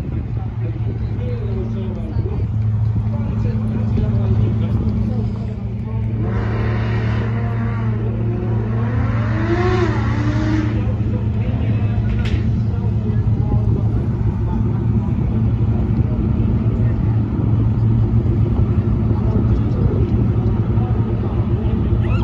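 A steady, unchanging engine hum, with people talking nearby in the middle.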